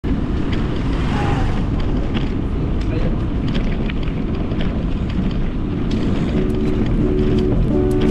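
A steady rushing noise with scattered clicks. Soft lofi music chords fade in about six seconds in.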